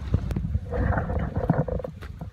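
A man's voice drawing out the word "all" for about a second, starting "all right", over low wind rumble on the microphone.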